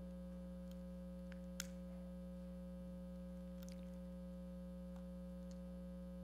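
Faint, steady electrical mains hum, with a few faint clicks and one slightly stronger click about a second and a half in.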